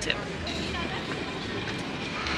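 Steady outdoor city street noise: a low rumble of traffic under an even hiss.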